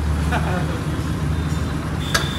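A road vehicle's engine idling with a steady low hum, over general street noise.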